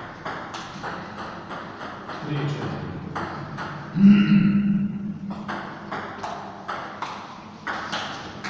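Table tennis rally: the ball clicks off the bats and the table in quick succession. A loud shout cuts in about four seconds in.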